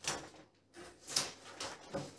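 Rustling and crackling of a stiff self-adhesive wall-tile sheet and its backing being handled, in a few short bursts.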